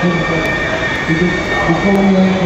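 An elevated subway train running on the steel structure overhead, with a steady high-pitched squeal of its wheels on the rails.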